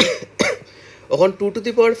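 A man clears his throat in two short bursts about half a second apart, then goes back to speaking.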